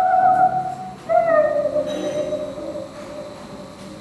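A woman's voice singing two long held notes with wide vibrato on an old film soundtrack played back through speakers in a room. The first note breaks off about a second in; the second starts a little higher, slides down and fades out by about three seconds.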